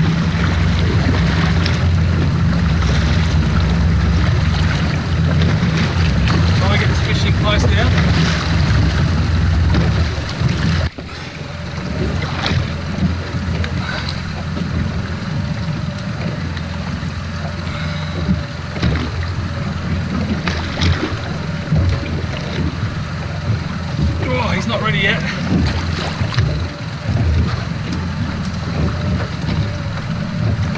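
A boat's outboard engine running steadily at low speed, with wind on the microphone and sea noise. About eleven seconds in, the low hum briefly drops away and then goes on quieter and rougher.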